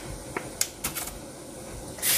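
A few sharp, light clicks and crackles, a few tenths of a second apart, from crisp shredded napa cabbage and radish being handled.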